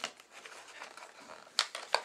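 Clear plastic blister pack being handled, a faint crinkling with two sharp plastic clicks near the end.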